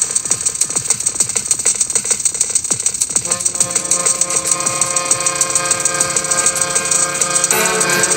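Industrial-style electronic music: a fast, steady rattling pulse, with sustained synthesizer tones coming in about three seconds in and thickening near the end.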